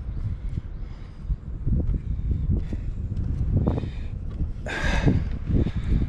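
Footsteps on wooden deck boards and a handheld camera being picked up and handled: uneven low thumps, with a brief loud rustle about five seconds in.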